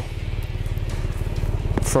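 BMS Sand Sniper 150 go-kart's 150cc engine idling steadily, an even low pulsing.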